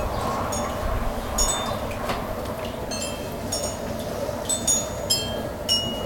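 A potter's wheel runs with a steady hum as wet hands shape a clay pot. Over it, high metallic chime tones ring out at irregular moments, several times.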